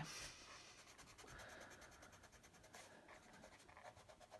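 Very faint sound of a pencil dragged lightly across drawing paper, pressed gently in soft strokes.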